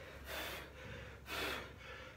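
A man breathing hard through the mouth, two heavy breaths about a second apart: winded from boxing training.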